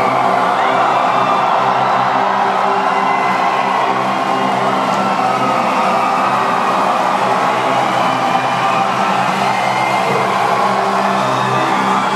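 Loud, sustained low intro music over a concert PA, held chords with little change, while a large crowd cheers and whoops over it.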